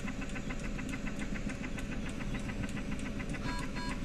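Bunnell Life Pulse high-frequency jet ventilator running, its jet pulses coming as a rapid, even train of ticks at a rate set to 420 breaths a minute.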